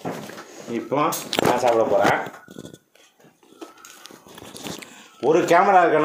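People talking, with a brief lull about three seconds in, then a man talking loudly from about five seconds in.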